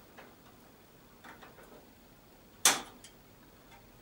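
A sound card being rocked out of its motherboard slot: faint handling rustles, then one sharp click about two-thirds of the way through as the card comes free.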